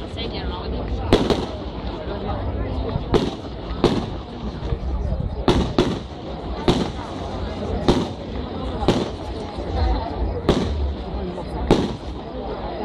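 Fireworks display: aerial shells going off in sharp bangs, roughly one a second at irregular spacing, about a dozen in all, over a steady low rumble.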